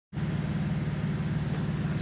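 Infiniti G35's 3.5-litre V6 idling steadily through a custom 2-inch single-exit catback exhaust, a low even pulsing with no revving.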